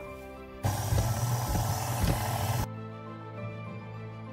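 KitchenAid Artisan stand mixer running with its dough hook, kneading bread dough; the motor comes in about half a second in and cuts off suddenly near three seconds. Soft background music plays throughout.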